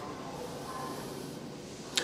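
Quiet, steady background hiss of room tone, with no distinct sound event.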